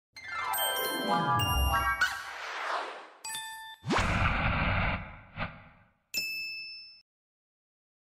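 Designed logo-intro sound effects: a falling sweep of tones with bright chiming dings, then a quick rising sweep into a low hit about four seconds in. A final bright chime about six seconds in rings out briefly and stops.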